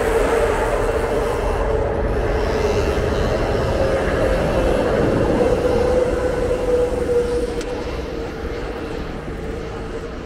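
Elevated Market-Frankford Line train running on the steel viaduct overhead: a loud rumble with a steady droning tone that fades out over the last couple of seconds as the train moves away.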